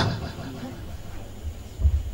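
Steady low hum and faint room noise, with a dull low thump near the end. The tail of a man's shouted word falls at the very start.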